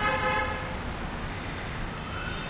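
A vehicle horn toots briefly at the start, a single steady note that fades within a second, over a low rumble of street traffic.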